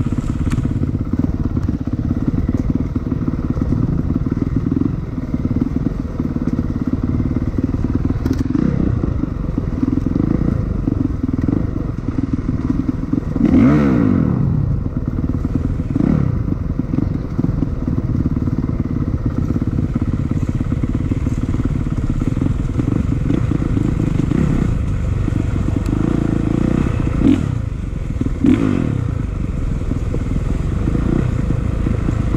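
Dirt bike engine running along a rough trail, revving up and falling back several times, with the strongest rev about halfway through. Occasional knocks and rattles come from the bike over the uneven ground.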